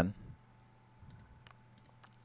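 A few faint, short clicks of a computer mouse, about four in the second half.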